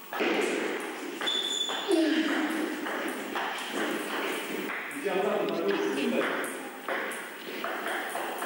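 Table tennis rally: the celluloid ball pinging sharply off the bats and the table, with a sudden start as the serve is struck. Players' voices and a shout are heard during and after the point.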